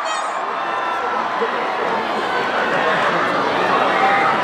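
Large crowd cheering and shouting, many voices blending into a steady din with nearby chatter.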